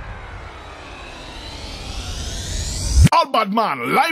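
Dubstep mix transition: a synth sweep falls in pitch and fades, then a rising sweep builds up until it cuts off sharply about three seconds in, where a sampled, processed voice comes in.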